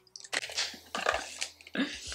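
A woman laughing softly in a few short, breathy bursts.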